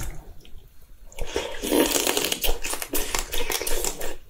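Close-miked wet slurping and sucking of raw soy-sauce-marinated crab held to the mouth, the meat and marinade drawn out of the shell. It starts softly and becomes loud and continuous about a second in.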